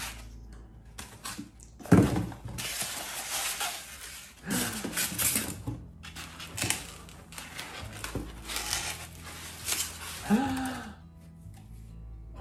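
Cardboard boxes and packing material rustling, scraping and crinkling as a boxed ceramic candle vessel is unpacked by hand, with a few light clicks and knocks. Short vocal exclamations come about two seconds in, near the middle and near the end.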